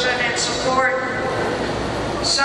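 A woman's speech over a podium microphone, echoing in a large gymnasium; only speech, in a language the transcript did not write down.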